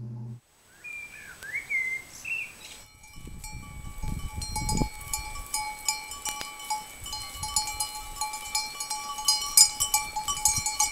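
Bells ringing: several steady ringing pitches with many small high clinks, starting about three seconds in, after a short wavering high-pitched call.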